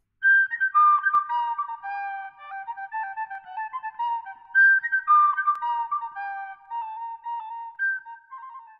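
Recorder playing a simple melody of clear, pure notes, with a phrase that repeats about four seconds in.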